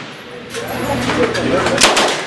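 A single loud shot from an M3A1 "Grease Gun" .45 ACP submachine gun near the end, the first of a fully automatic burst, after a stretch of faint, indistinct voices.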